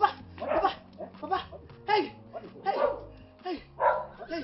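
A dog barking repeatedly, in short sharp barks one to three times a second.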